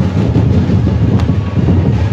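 Very loud music from a procession DJ sound-system truck, dominated by heavy, steady bass that blurs into a continuous low rumble.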